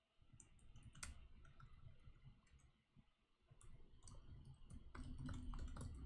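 Faint computer keyboard typing: scattered key clicks at first, then a quick, denser run of keystrokes in the second half.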